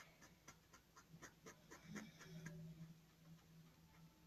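Faint marker strokes on paper, short scratchy scrapes repeating as a drawing is colored in, with a soft low hum about two seconds in.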